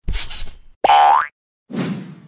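Cartoon sound effects for an animated logo: a brief noisy swish, then a loud springy boing rising in pitch about a second in, and a softer, fading thump near the end.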